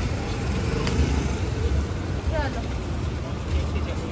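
Suzuki Dzire taxi driving up and stopping close by, its engine running over the low rumble of street traffic.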